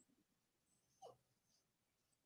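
Near silence: room tone, with one faint, short squeak falling in pitch about halfway through.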